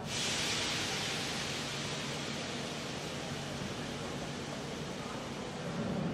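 A train releasing compressed air: a sudden, loud hiss that fades slowly, over the murmur of a station crowd.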